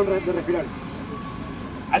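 A man's voice finishing a phrase, then outdoor background noise with a thin steady tone in the second half.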